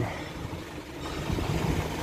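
Steady low engine hum, with a rougher rumble building about a second in.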